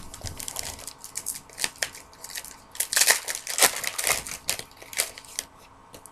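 Plastic trading-card pack wrappers being handled and crumpled: an irregular run of sharp crinkles and crackles, loudest about three to four seconds in.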